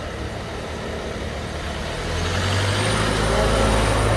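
An engine running, with a low hum that grows louder about halfway through and a thin high whine that rises and then holds steady.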